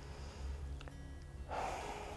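A quiet pause with a low steady room hum; about one and a half seconds in, a person draws an audible breath, a soft in-breath taken before starting to speak.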